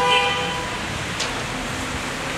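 A vehicle horn sounding once, a steady held note of about a second, over a constant background of street noise.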